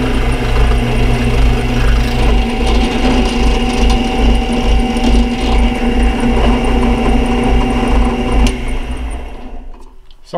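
Benchtop drill press running, its small bit cutting a lanyard hole through a taped wooden knife handle with a steady motor hum. Near the end the motor dies away.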